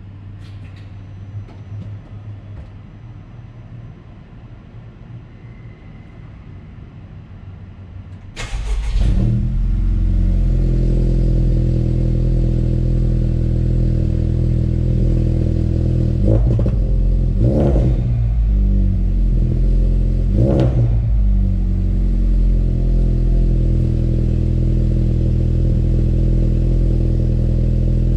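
Honda Civic Type R (FK2) 2.0-litre turbocharged four-cylinder starting from cold: the engine fires about eight seconds in and settles into a steady cold idle heard at the exhaust. Three brief throttle blips come a little past the midpoint.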